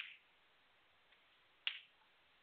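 Snooker balls clicking on the table: two sharp clicks about a second and a half apart, one right at the start and one near the end.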